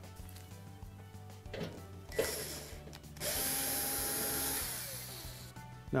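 Cordless drill/driver backing out screws that hold the burner support to the range's main top: a brief burst, then a steady run of about a second and a half whose pitch falls as the motor winds down.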